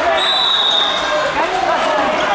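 A referee's whistle blown once, a steady high note about a second long, over many overlapping voices in a large hall. Blown while one wrestler holds the other on his back, it is the signal of a fall that ends the bout.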